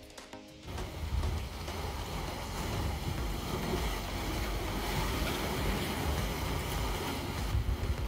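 Wind blowing on the microphone over the wash of sea waves against a rock breakwater, coming in steadily just under a second in as background music stops.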